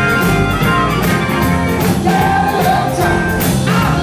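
Live blues band playing: a woman singing over electric guitar and a steady drum beat, heard through the stage PA.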